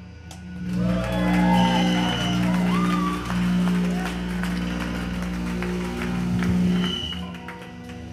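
Live rock band playing on stage: a run of long held low guitar and bass notes, each lasting about a second, with rising and falling higher tones over them in the first few seconds.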